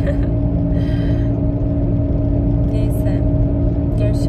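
Steady drone of a car's engine and road noise heard inside the cabin while driving at highway speed, with brief laughter near the start.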